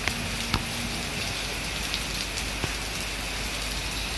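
Steady rain falling, a constant hiss with a few sharp taps of individual drops scattered through it.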